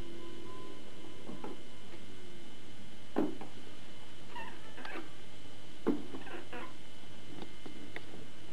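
A toddler making a few short, soft vocal sounds, about three seconds in and again a few times between four and seven seconds, over a steady low hum.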